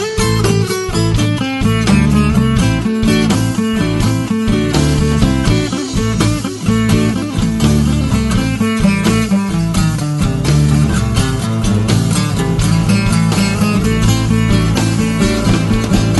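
Instrumental break in an acoustic blues song: guitars playing a steady, busy rhythm of plucked notes over a low bass line, with no singing.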